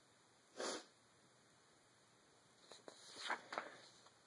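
A short sniff about half a second in, then rustling and clicking of stiff card being handled and swapped near the end.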